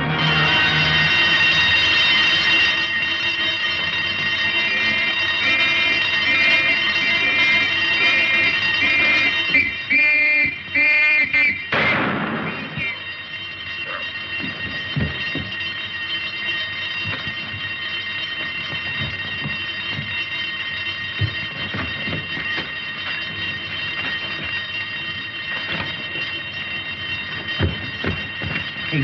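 A burglar alarm rings with a steady high tone under the film's music score. A loud, jumbled burst of sound about ten to twelve seconds in is followed by scattered knocks while the alarm keeps sounding.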